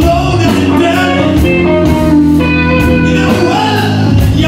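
Live band playing a blues number: electric guitars, bass and drum kit with cymbal strokes, loud and steady.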